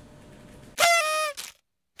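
Low room tone, then, a little under a second in, a honk sound effect: one horn-like pitched blast sliding slightly down, lasting well under a second, followed by dead silence. A second identical honk starts at the very end.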